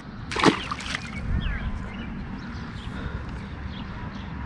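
A released largemouth bass hits the pond surface with a single sharp splash about half a second in, followed by a low steady rumble.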